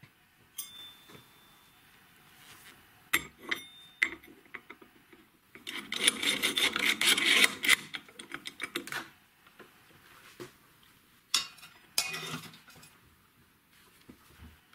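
Metal parts being handled on a wooden workbench: steel mounting plates and bolts clinking, knocking and scraping. A dense spell of rattling and rubbing comes about six to nine seconds in, with scattered knocks before and after.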